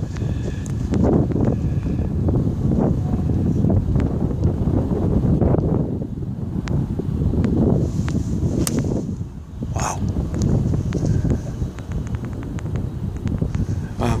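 Wind buffeting the phone's microphone in uneven gusts, with a short sharp strike of a golf iron hitting the ball a little past the middle.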